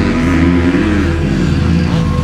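Motocross bike engines revving, their pitch rising and falling as the throttles open and close.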